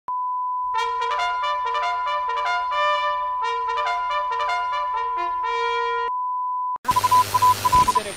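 A steady 1 kHz test-card tone sounds under colour bars, with a brass melody played over it for most of its length. Near the end the tone cuts off and gives way to loud static hiss with a high whine and stuttering beeps.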